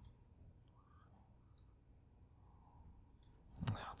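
Faint, scattered clicks of a computer mouse during a drag-and-drop attempt over quiet room tone, with a few separate clicks spread across the few seconds.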